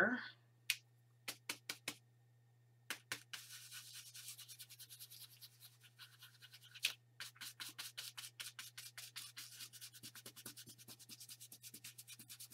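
Scruffy stencil brush dabbing and scrubbing blue fluid acrylic paint through a flower stencil onto paper: a few separate taps in the first two seconds, then rapid scratchy scrubbing strokes from about three seconds in. A steady low hum runs underneath.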